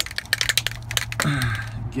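Aerosol can of RP-342 cosmoline rust-proofing wax being shaken, its mixing ball rattling in quick, dense clicks that stop about a second in.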